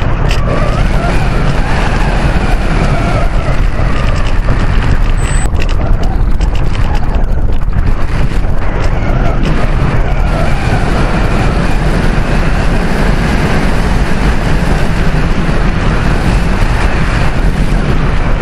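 Loud, steady airflow buffeting the microphone of a camera riding on a gliding RC sailplane, with a heavy low rumble.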